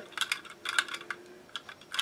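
A run of light, irregular clicks from a small plastic solar-powered dancing Santa figure held in the hand. The clicks thin out near the end.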